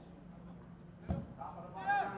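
Sparse on-pitch sound of a football match: a single thud of a football being kicked about a second in, then a player's short shout near the end.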